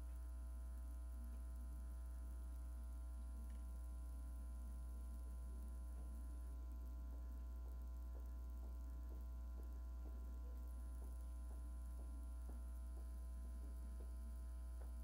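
Steady low electrical mains hum with a few fainter higher steady tones over it, and faint ticks about twice a second in the second half.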